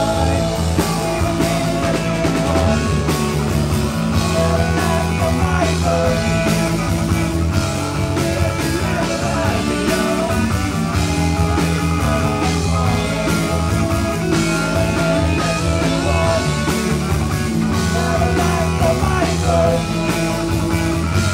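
Live rock band playing with drums and electric guitars, several band members singing together into microphones.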